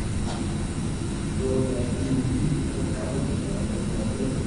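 Steady low rumble of a large hall's room noise with faint indistinct voices.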